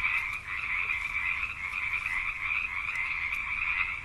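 Frogs calling in a steady, high trill.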